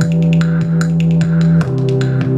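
Instrumental passage of live electronic pop: a loud sustained low bass note that steps down to a lower note near the end, over a steady beat of percussive hits about twice a second.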